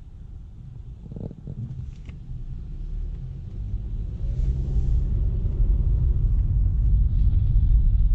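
Nissan Juke's 1.6-litre four-cylinder petrol engine and road rumble heard inside the cabin, growing steadily louder as the car accelerates, with a rising engine note midway through.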